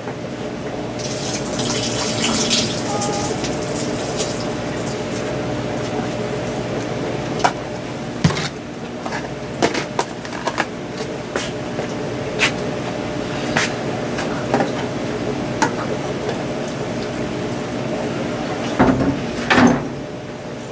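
Water running from a tap into a sink while a plastic container is rinsed. The water splashes hardest in the first few seconds, and from about a third of the way in it is broken by repeated clicks and knocks of the container being handled.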